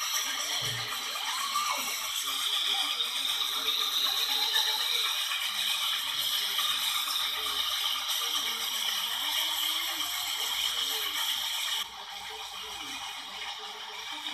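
Steam locomotive running: a steady hiss of steam with rattling, played back through a television speaker. The hiss drops off abruptly near the end.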